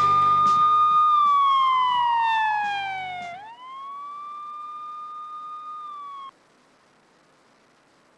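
A single siren wail used as a sound effect in a closing jingle. It holds a high note, slides down for about two seconds, swoops back up and holds again, then cuts off suddenly about six seconds in. A rock music sting fades out under it over the first three seconds.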